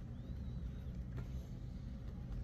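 Classroom room tone: a steady low rumble with a faint click a little past the middle.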